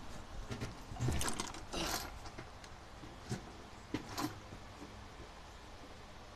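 Scattered clicks, knocks and rustles of handling, with the busiest stretch between about one and two seconds in and the last clicks a little after four seconds; after that only faint background remains.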